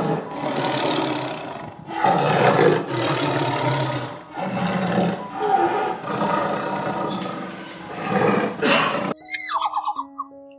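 Tiger roaring in a run of long, rough roars of about two seconds each, which cuts off sharply about nine seconds in.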